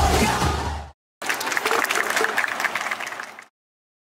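Song music fading out, then after a brief gap an audience applauding, with some voices, for about two seconds before the sound cuts off suddenly.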